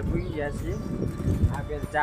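Short fragments of a man's voice over steady background noise, with a soft knock about one and a half seconds in.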